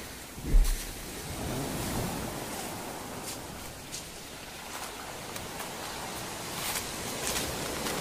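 Sea waves breaking and washing in over a cobble beach: a steady rushing of surf. A brief low thump about half a second in is the loudest moment.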